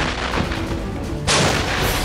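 Cannon of a tracked armoured vehicle firing: the fading echo of one shot, then a second loud shot about a second and a half in, dying away slowly. Background music runs underneath.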